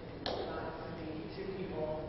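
A voice speaking in a large hall, with one sharp click about a quarter second in.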